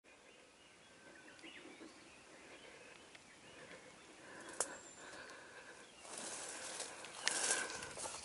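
Quiet forest ambience with faint bird calls. There is one sharp click a little after four and a half seconds. From about six seconds in, footsteps rustle louder through dry leaf litter.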